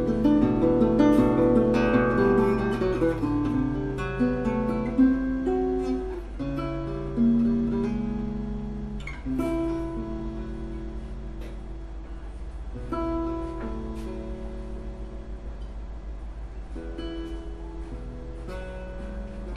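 Solo classical guitar, a Seiji Kamata-built instrument, fingerpicked with melody over bass notes. The playing starts busy, then thins out to slower, held notes that grow gradually quieter.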